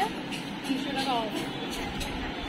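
Steady background noise of a busy clothing store, with background music and a short voice sound about a second in.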